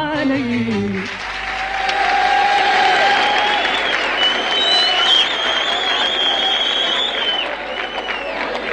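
A female singer's phrase ends on a falling note about a second in, then a live audience breaks into applause and cheering, with drawn-out shouts from the crowd over the clapping.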